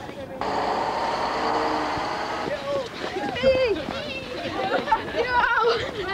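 Vehicle noise, a steady hiss with a low hum, starting suddenly just under half a second in and lasting about two seconds, followed by young people's voices talking and calling out.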